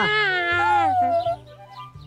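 A cartoon baby's loud wail, high and falling in pitch, breaking off about a second and a half in.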